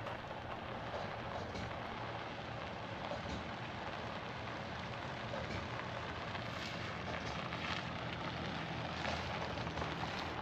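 Vehicle rolling slowly across a gravel lot: steady crunch and crackle of tyres on gravel over a low hum of road and engine noise.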